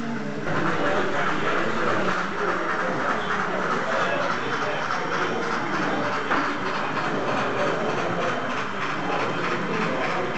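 Model train running on a layout, its wheels giving a steady, rhythmic clicking, over a murmur of voices in the hall. The sound gets louder about half a second in.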